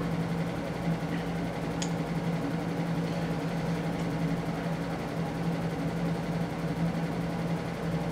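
A steady low hum with a soft hiss, in a small room; two faint clicks about two and four seconds in.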